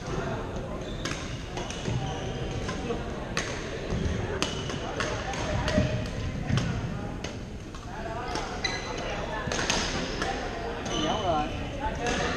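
Badminton rackets striking shuttlecocks across several courts: sharp, irregular smacks, about one or two a second, over a steady background of voices. Short squeaks, likely sports shoes on the gym floor, come in near the end.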